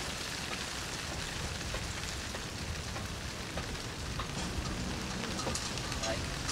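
Steady, even hiss of background noise with a few faint ticks.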